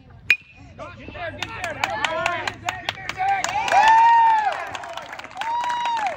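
A baseball bat cracks against a pitched ball once with a short ringing ping. About a second later spectators start cheering and clapping, with long drawn-out yells that are loudest around four seconds in.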